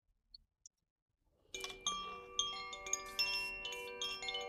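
Koshi chime, a bamboo tube chime, shaken so its tuned rods ring. After near silence, it starts about a second and a half in, with repeated light strikes building into overlapping, sustained, clear tones.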